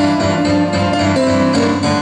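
Blues piano played on a Roland digital stage piano and heard through the PA: sustained chords and melody notes that change a few times a second.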